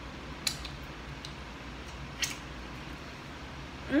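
A person eating fried food: two short, sharp mouth smacks, about half a second and two and a quarter seconds in, over a steady low hum. A hummed 'mmm' of enjoyment starts right at the end.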